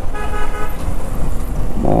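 A vehicle horn honks once, briefly, near the start, over steady wind rush and engine noise from a motorcycle riding in city traffic.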